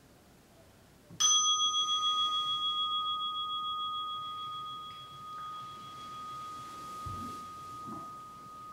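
A meditation bell struck once, about a second in, ringing on with a long, slowly fading tone that wavers slightly; it marks the end of the sitting. A soft low thump comes near the end.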